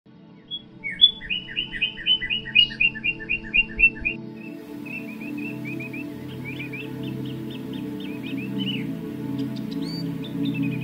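Baya weaver chirping: a fast, loud run of about a dozen sharp chirps in the first few seconds, then softer, quicker chattering notes. Underneath runs a steady, low ambient music drone.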